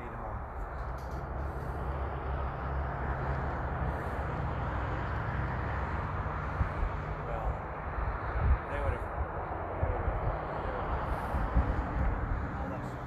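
Steady outdoor rushing noise with a heavy low rumble and a few dull thumps, with faint distant voices underneath.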